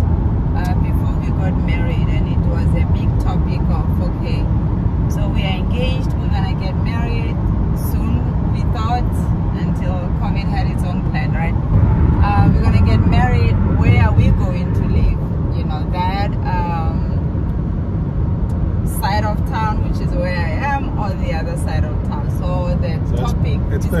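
Steady road and engine noise heard from inside the cabin of a car moving at highway speed.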